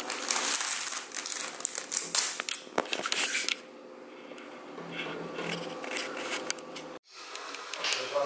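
Corrugated cardboard sheets and cut-outs being handled and slid across a table, with scraping and crackling rustles. The handling is busiest in the first half and quieter, with only scattered clicks, in the second half.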